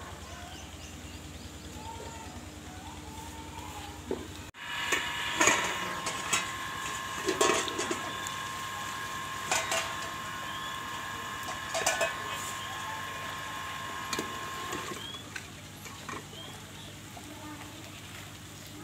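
Steel cooking pots, lid and utensils clanking and scraping, about half a dozen sharp metallic knocks through the middle of the clip, over a steady high ringing tone. Birds chirp throughout.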